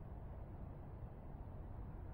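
Quiet outdoor night background: a faint, steady low rumble with no distinct sound in it.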